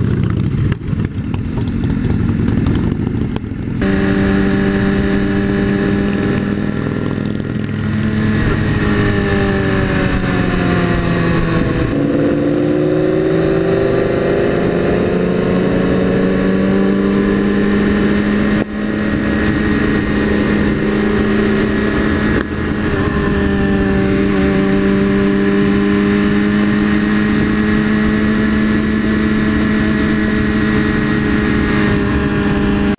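BMW S1000RR's inline-four engine running at steady cruising revs, over wind rush on the helmet camera. The pitch sags and climbs back about ten to fourteen seconds in. The first few seconds are a rougher rush of wind and traffic before the steady engine note sets in, about four seconds in.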